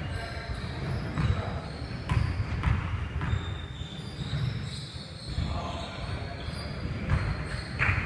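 Basketball bouncing on a hardwood gym floor, a series of irregular low thumps in a large gym, with players' voices around it.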